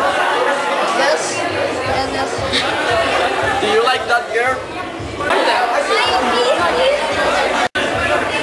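People talking over the chatter of a crowded room, with a momentary cut to silence just before the end.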